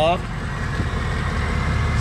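A 6.0-litre Power Stroke V8 turbo diesel idling steadily, heard as a low hum.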